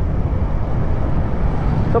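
Steady low rumble of wind and road noise while riding a Honda Click 125i V3 scooter at about 35–40 km/h, with no sharp events and no distinct engine note above it.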